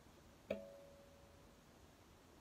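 A large Eagle Claw bait hook clamped in a fly-tying vise, flicked once with a finger: a sharp click about half a second in, then a short ringing tone that dies away over about a second. The hook "sings", the sign that it is held firmly in the vise jaws and ready to tie on.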